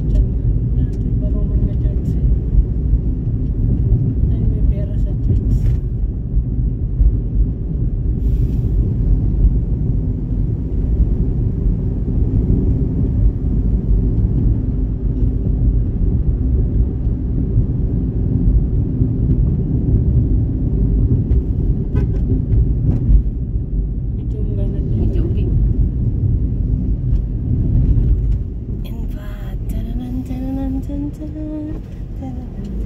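Car cabin road noise: the engine and tyres give a steady low rumble while driving on a concrete road, easing near the end as the car slows.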